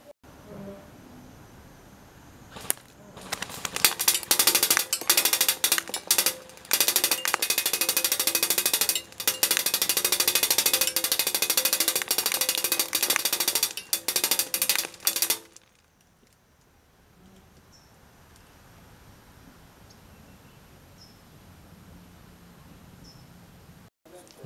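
CYMA CM028 shorty AK airsoft electric gun with a polymer gearbox firing several long full-auto bursts, its gearbox whirring and cycling rapidly with short pauses between bursts, stopping about fifteen seconds in.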